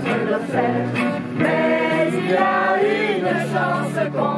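A small group of people singing together, accompanied by a strummed acoustic guitar.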